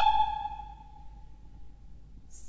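The end of an operatic soprano's held high note, dying away over about a second in the hall's reverberation into a hush.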